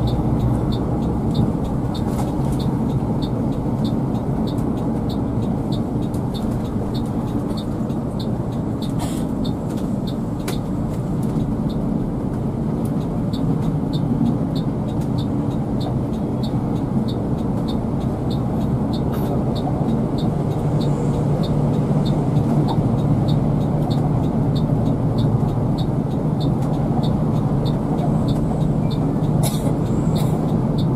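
Steady engine and road noise heard inside the cabin of a three-axle coach running at speed. Over it, a high ticking beep repeats evenly, about two to three times a second.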